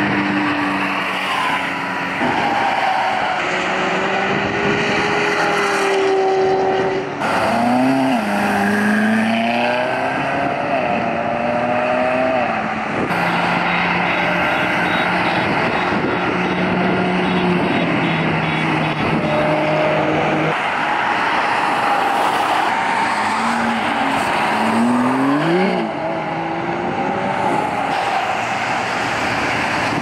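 High-performance sports car engines accelerating and revving as the cars drive past, in several short clips cut together. The engine note climbs sharply twice, about eight seconds in and again near the end.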